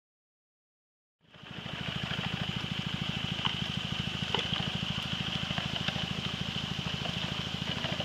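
Silence for about the first second, then a small gasoline engine-driven water pump comes in, running steadily at a fast even firing rhythm, with a few faint clicks over it.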